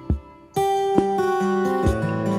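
Instrumental introduction of a slow ballad: acoustic guitar and keyboard playing sustained chords, with a few soft low hits marking the beat. The sound dips briefly early on, and a new chord comes in about half a second in.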